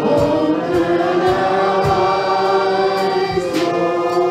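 A group of voices singing a slow worship song with instrumental accompaniment, holding long notes over low, regular beats.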